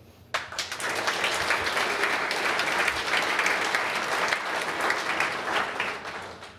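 Audience applauding: the clapping starts suddenly about a third of a second in, holds steady, then dies away near the end.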